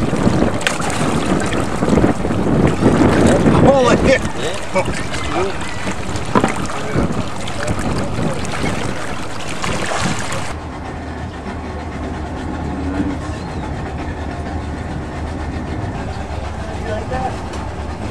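Water splashing and sloshing at the surface among nurse sharks crowding beside a boat. About ten seconds in, the sound turns suddenly muffled as the camera goes under water.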